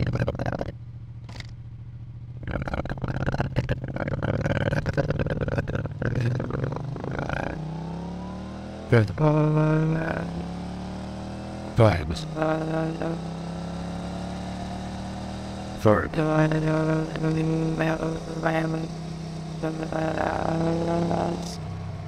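Motorcycle engine sound from a ride, run through AI speech enhancement so that it comes out as eerie, voice-like humming and warbling tones instead of engine noise. The tones rise in pitch as the bike accelerates, broken by a few sharp clicks.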